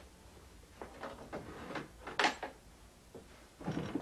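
Small household handling sounds at a wooden chest of drawers: a few soft knocks and rustles, one sharp click about two seconds in, and a duller thump near the end.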